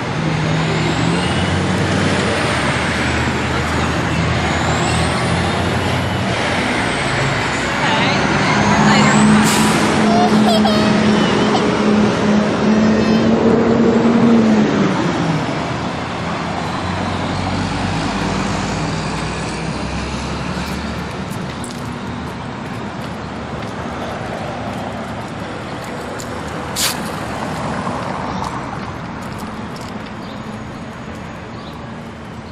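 Street traffic with a large vehicle's engine running close by. It grows louder about eight seconds in and falls away after about fifteen seconds, and a short sharp sound comes near the end.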